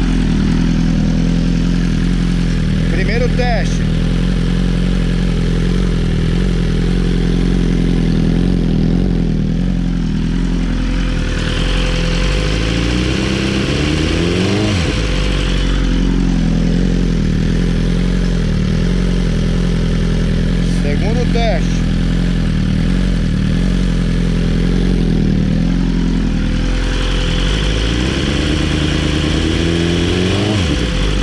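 2020 BMW S1000RR inline-four engine running in neutral through a Jeskap full titanium race exhaust with its dB killer removed, held at steady revs for a static noise measurement. The revs drop away and climb back about halfway through, and again at the very end.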